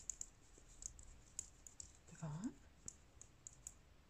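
Light, scattered clicks of metal knitting-needle tips tapping against each other as stitches are purled on circular needles.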